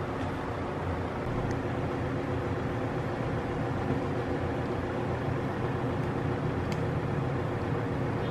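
A steady low mechanical hum with two faint light clicks, one about a second and a half in and one near the end.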